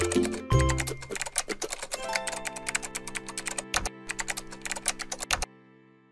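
Fast typing on a computer keyboard, many key clicks a second, over background music with held notes. Both stop about five and a half seconds in.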